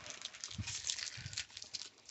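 Blue painter's tape being peeled off denim and gathered in the hands, a patchy crinkling rustle with a couple of soft low bumps.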